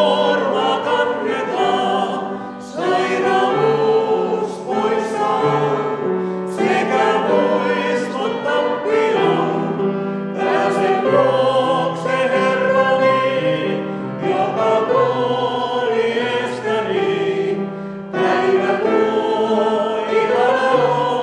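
Mixed vocal quartet of two men and two women singing a Christian song in harmony, in long sustained phrases with brief breaks between them.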